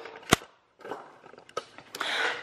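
A single sharp click about a third of a second in, followed by faint room noise with a couple of soft ticks.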